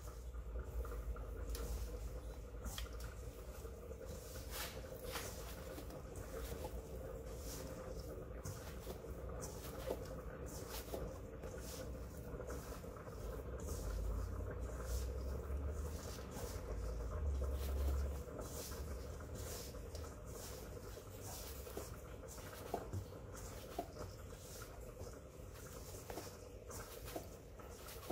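Hands kneading flour-tortilla dough in a stainless-steel bowl: soft, irregular pats, scrapes and small clicks as the dough is pressed and folded, over a faint steady hum.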